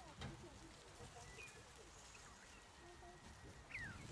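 Near silence with a few faint, short bird calls, the last a quick falling chirp near the end, and a soft knock just after the start.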